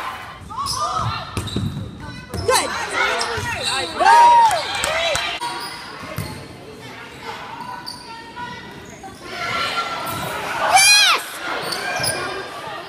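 Indoor volleyball play in a reverberant gym: several short squeaks of sneakers on the court floor and sharp knocks of the ball being hit, with voices in the hall.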